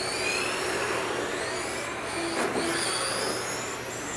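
Several 1/10-scale electric radio-controlled touring cars racing on a carpet track: a pack of high-pitched motor whines rising and falling in pitch as the cars accelerate and slow, over a steady hiss.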